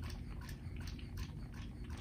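Small hand pump squeezed over and over to suck water up a thin tube out of a groundwater flow model's well: faint squishing clicks, about four or five a second.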